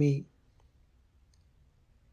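A voice reciting a Pali formula breaks off in the first moment, then a pause of near silence with a couple of faint clicks.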